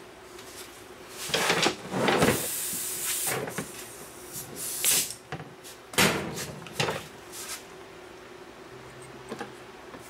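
Knocks and light clatter of thin wooden beehive frame bottom bars being picked up and set into a wooden frame-assembly jig, with a brief hiss about two seconds in.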